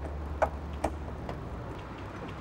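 Car fuel filler cap being handled at the filler neck, giving three short sharp clicks a little under half a second apart, over a low steady hum.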